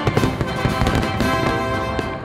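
Orchestral theme music with brass, with fireworks bangs and crackling mixed over it.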